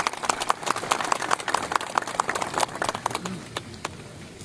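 Crowd applauding: a round of many hands clapping that thins out and dies away near the end.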